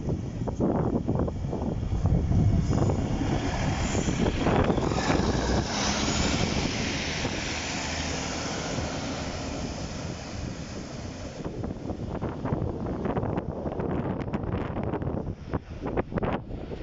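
Two-car diesel multiple unit passing close by through a level crossing: the diesel engines run steadily under the rumble of the train. Sharp clattering strikes come from the wheels over the rails, bunched near the start and again in the last few seconds as the rear of the train passes.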